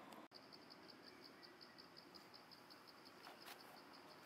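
Faint insect chirping: a high-pitched pulse repeating about five times a second, starting just after a brief gap in the sound. A couple of soft clicks near the end.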